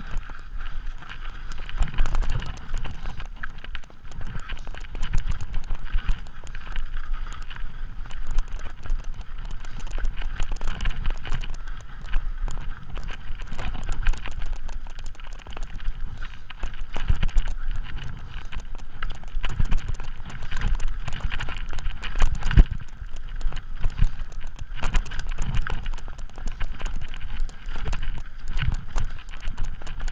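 Mountain bike descending a rocky trail: continuous rattling and clattering of the bike over loose stones, with heavier thumps as the wheels hit rocks and bumps every second or so.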